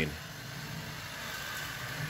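Steady hum of honey bees around an open hive, over an even background hiss.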